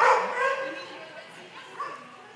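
Dog barking during an agility run: one loud bark at the start that tails off, and a second, shorter yip near the end.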